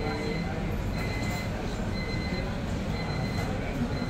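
Steady low rumble of a shop interior, with faint voices in the background and a thin high whine that comes and goes.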